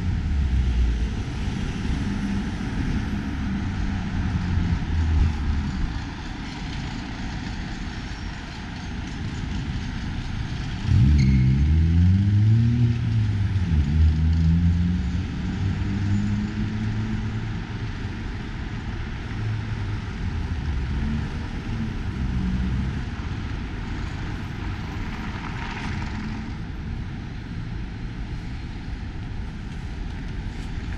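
Street traffic: running engines of vehicles going by, a low hum throughout, with one vehicle passing close and loudest about eleven to fifteen seconds in, its engine note bending down and up as it goes by.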